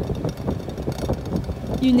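Car engine running with a low, uneven rumble, wind buffeting the microphone.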